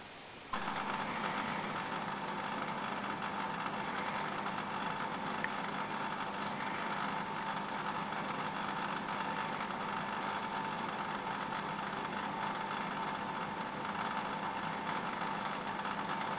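A small electric motor humming steadily with a light rattle, starting about half a second in, with a couple of faint high ticks partway through.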